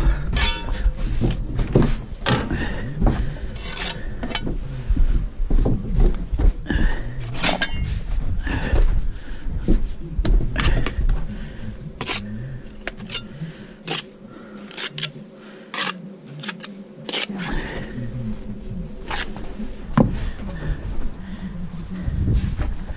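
Steel bricklaying trowel scraping and tapping on concrete blocks and mortar, with a run of irregular sharp taps and scrapes.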